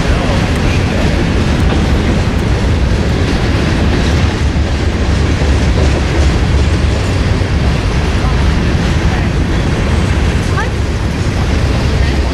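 Freight cars, covered hoppers and a tank car, rolling past on the rails: a loud, steady rumble of steel wheels on track.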